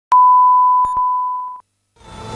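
Videotape line-up test tone played over colour bars: one steady pure beep that slowly fades and then cuts off suddenly, with two short clicks partway through.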